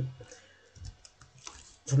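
A few faint, short clicks and taps, spaced irregularly, close to the microphone.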